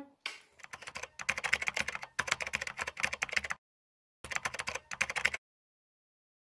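A quick run of kiss smacks from lips blown into the hands, many sharp smacks a second, in two stretches with a short break about halfway, then stopping abruptly.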